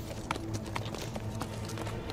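A ridden horse's hooves clopping on dirt in a few scattered, uneven hoofbeats, over a low steady music drone.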